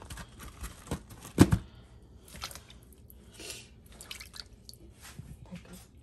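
Water splashing and dripping as raw pig tongue and ears are rinsed by hand in a plastic bowl of water, with one sharp knock about a second and a half in.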